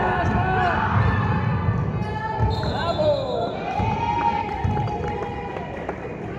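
A basketball bouncing on a hardwood gym floor as it is dribbled: several irregular low thuds, over players' and spectators' voices.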